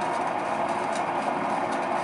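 Electric potter's wheel running at speed: a steady motor hum with a few faint clicks.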